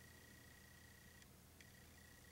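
Near silence: room tone with a faint steady high-pitched whine and a faint low hum.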